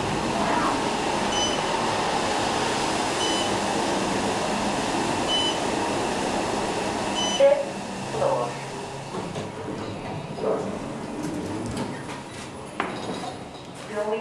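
Otis Series 5 elevator car running: a steady rushing ride noise with a short high beep about every two seconds. About seven seconds in, the noise cuts off with a thump as the car stops, and the rest is quieter, with scattered knocks.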